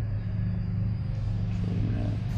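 Steady low machine hum.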